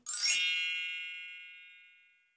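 A bright chime sound effect: a quick upward sparkle that settles into a ringing ding and slowly fades away over about two seconds.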